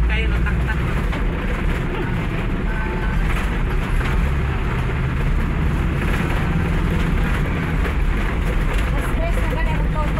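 Steady low rumble of road and engine noise inside a moving vehicle, with faint voices of passengers near the start and near the end.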